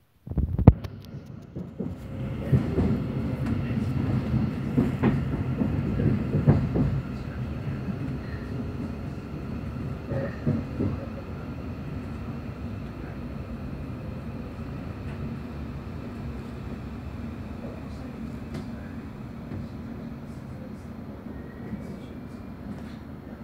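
Running noise inside a Thameslink Class 700 electric train: a low rumble of the wheels on the rails with faint steady whines above it. A sharp knock comes about half a second in. The rumble is louder and uneven for the first several seconds, then settles to a steadier, quieter level.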